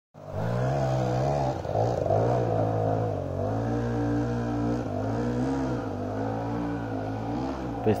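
Two-stroke enduro motorcycle engine running at idle, its pitch rising and falling gently a few times with light throttle.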